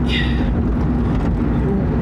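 Steady road and engine rumble heard from inside a moving car's cabin, with a brief hiss at the start.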